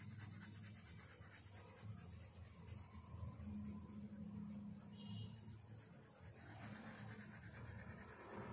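A colour pencil shading across paper: a faint, uneven scratching.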